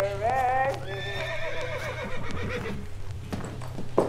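A horse whinnying: one long call with a shaking, wavering pitch that fades out about three seconds in.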